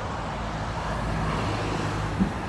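Steady road traffic: car engines and tyre noise from passing and waiting vehicles.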